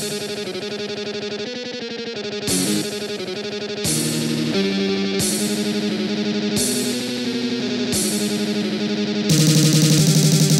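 Sampled piano playing a dense, fast MIDI arrangement of a heavy-metal song, built from rapidly repeated notes and stacked chords. It grows louder and fuller near the end.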